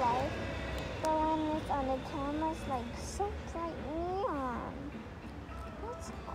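A child's high voice in short sliding utterances with no clear words, its pitch swooping up and down, with a quick high upward sweep about four seconds in, over a steady low hum.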